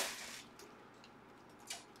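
Near silence: room tone between phrases of speech, with one faint brief click shortly before the end.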